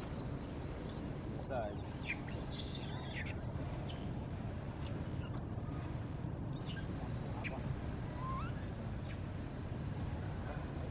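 Scattered short, high-pitched chirps and squeaky calls, one rising in pitch near the end, over a steady low rumble.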